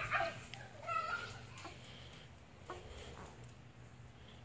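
A young child's faint, high-pitched squeals: one right at the start and another about a second in.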